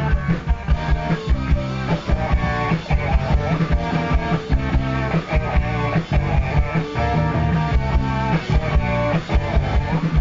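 Indie rock band playing live: electric guitar, bass guitar and drum kit together, with a steady, driving drum beat.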